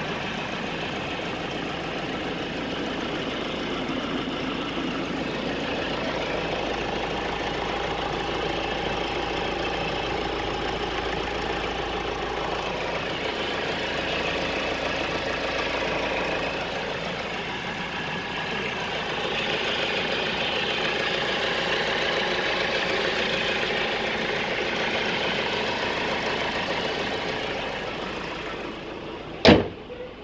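Honda Civic 2.2 i-CTDi diesel engine idling steadily, heard close up with the bonnet open. A single loud slam near the end.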